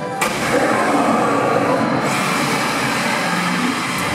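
The animatronic dragon atop the bank building breathing fire: a sudden loud roaring rush of flame that starts about a quarter second in and grows brighter and hissier about two seconds in.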